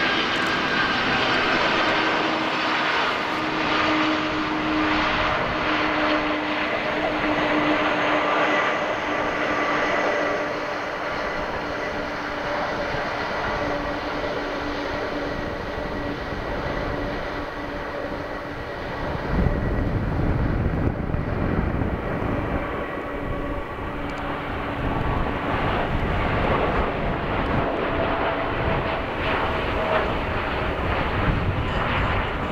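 Jet engines of a Boeing 787 at takeoff thrust during the takeoff roll: a continuous run with a steady whine that sags slightly in pitch. About two-thirds through, a deep rumble swells in under the whine as the airliner accelerates past and lifts off.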